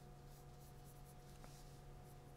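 Faint scratching of a pencil stroking across drawing paper, over a low steady hum.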